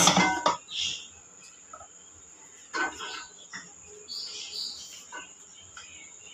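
Light handling sounds of burger bun tops being set onto sauced chicken fillets on a plastic tray, with a few soft taps and rustles, the clearest about three seconds in. A steady high-pitched tone runs underneath.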